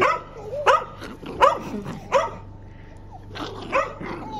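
A dog barking in short, sharp barks: four about three-quarters of a second apart, a pause, then two more near the end.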